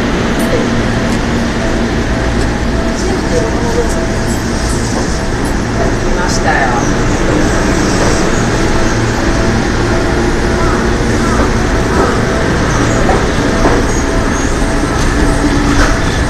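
Seibu 101-series electric train running past the platform, hauling new 40000-series cars: a steady rumble of wheels on rail with a faint steady hum.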